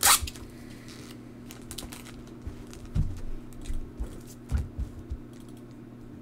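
A trading card in a clear plastic sleeve being handled and set down on a table: a sharp plastic rustle right at the start, then scattered light clicks and a few soft thumps.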